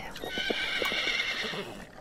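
A horse whinnying, one long call of about a second and a half, over soft hoof clops on earth.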